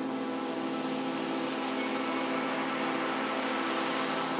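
Electronic music intro: a held synthesizer pad chord with a white-noise sweep rising and brightening beneath it, building up to the beat.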